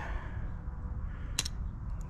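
A single sharp click from an automatic knife's blade mechanism, about one and a half seconds in, against a low background rumble.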